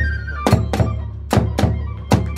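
Kagura hayashi music: drum and small hand cymbals struck in pairs of beats, with long ringing after each pair. A held flute note drops slightly and fades about a quarter of the way in.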